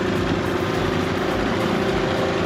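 Small outboard motor on an inflatable dinghy running at a steady pitch as it drives the dinghy under way.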